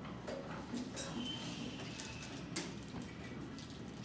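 Quiet classroom room tone: children sitting at desks, with scattered small clicks and knocks and one sharper click about two and a half seconds in.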